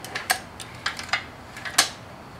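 A 99cc Harbor Freight Predator single-cylinder four-stroke engine turned over slowly by its recoil pull cord, giving a series of sharp, irregular metallic clicks. This is a test of whether an over-long E3 spark plug's electrode tip strikes the piston, and the owner concludes that it does.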